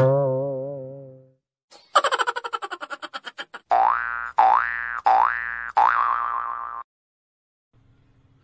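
Cartoon comedy sound effects: a wobbling boing that fades away over about a second, then after a short gap a fast twanging rattle that slows down, then four quick rising sweeps in a row that cut off sharply.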